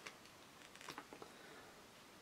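Faint clicks and snips of small side cutters working the plastic insulation off the inner cores of twin and earth cable, with a small cluster of clicks about a second in.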